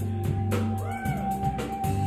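Live rock trio playing: electric guitar, bass guitar and drum kit, with a held guitar note and regular drum hits. About halfway in, a high note bends up and falls back.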